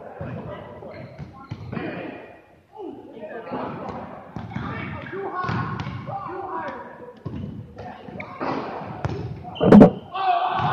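Dodgeballs bouncing and thudding on a hardwood gym floor while players shout and call out, echoing in a large gymnasium. A much louder sharp thud of a ball strike comes near the end.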